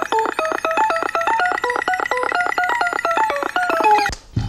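Electronic music: a fast synthesizer sequence of short, bright bleeping notes that step up and down in pitch, several notes a second, cutting off at the end.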